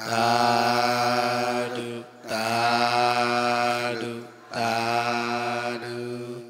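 A man's voice chanting 'sadhu' (Burmese 'thadu') three times, each word drawn out into a long note held on one steady pitch, with brief breaks between them.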